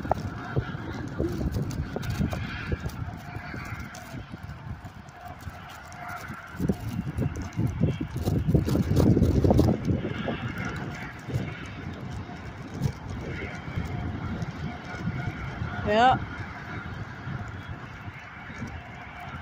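Wind buffeting the camera microphone, a low rumble that swells and eases, strongest in the middle; a voice says "yeah" near the end.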